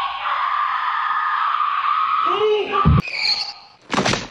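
A woman's long, drawn-out scream lasting a little over two seconds, then a brief man's voice and a heavy thud just before three seconds in, with a sharp crack at the very end.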